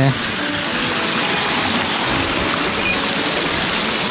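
Small mountain stream running over rocks: a steady, unbroken rush of water.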